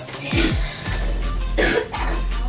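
Two short coughs, about half a second in and again near the end, over background music with a deep bass that slides downward early on.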